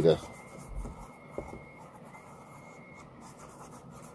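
Quiet rubbing and scratching of hands handling a dark leather knife sheath, with a faint click about a second and a half in and a thin, steady high whine in the background.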